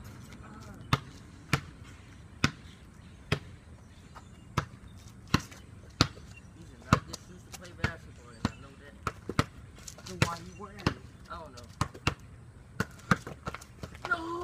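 A basketball being dribbled on a concrete court: a steady run of sharp bounces. The bounces come quicker in the second half.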